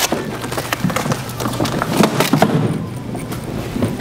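Rope rustling and dragging, with scattered clicks and knocks from chairs, as people shake off ropes and get up from their seats, over background music.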